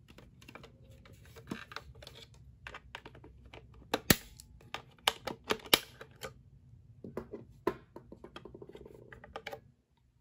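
Irregular clicks and taps of hard plastic as a small screwdriver works the battery-cover screw of a plastic toy appliance. There are a few sharper knocks in the middle and a quick run of small clicks near the end as the cover comes loose.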